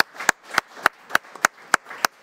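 Hand clapping close to a microphone: sharp, evenly spaced claps, about three and a half a second.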